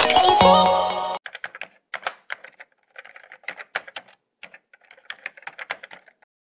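Background music that cuts off suddenly about a second in, followed by a typing sound effect: rapid keyboard key clicks in irregular runs with short pauses.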